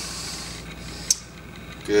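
A person exhaling hard in a long hiss through the mouth while pulling a resistance band apart in a rear delt fly, then a short sharp click a little after a second in.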